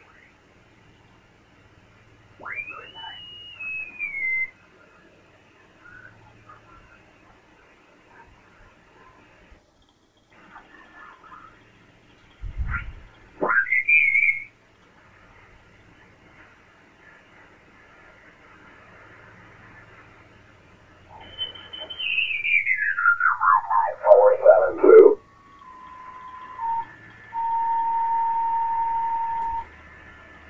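Icom IC-7851 receiver audio in upper sideband on the 20-metre band while the dial is tuned: band hiss with squealing whistles that glide in pitch as off-tune sideband voices are swept past. A long falling sweep of garbled voice comes a little past twenty seconds, then a steady tone is held near the end.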